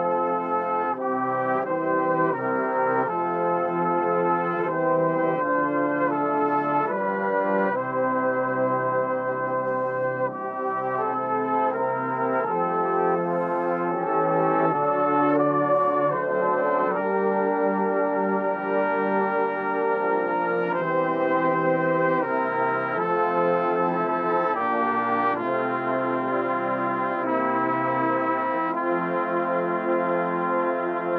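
A full brass band of tubas, euphoniums and cornets playing a hymn tune in held chords that change about every second or two.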